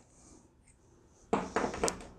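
A small metal valve part set down on a tabletop: a brief clatter of handling noise with one sharp click, after more than a second of near silence.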